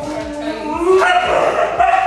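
A husky vocalizing in long, wavering whine-howls, the 'talking' greeting typical of huskies: one lower drawn-out call, then a higher one from about a second in.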